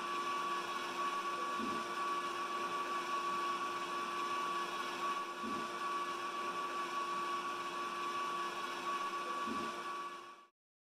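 Steady indoor background noise: a constant hiss with a steady high hum, and a few faint soft knocks about four seconds apart.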